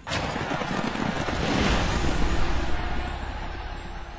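Logo-ident sound effect: a rushing, rumbling noise that starts suddenly, swells over about two seconds and then fades away.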